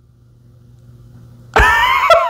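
A man bursts into loud, high-pitched laughter about one and a half seconds in, close to the microphone, after a faint steady low hum.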